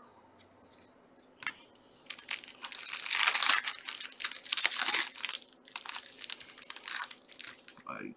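A foil trading-card pack torn open and crinkled by hand. It is quiet for about two seconds apart from one small click, then a dense run of crackling and tearing lasts about three seconds, followed by lighter, scattered crinkles.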